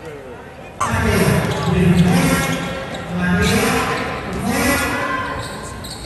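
Loud voices in a gymnasium during a basketball game, with a basketball bouncing on the court. The sound jumps suddenly in loudness about a second in.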